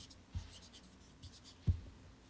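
Felt-tip marker strokes scratching faintly on paper as a Chinese character is finished, followed by a soft low thump near the end.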